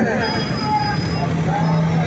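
Busy street noise: motorcycle engines running amid the voices of a crowd, with a steady low hum in the second half.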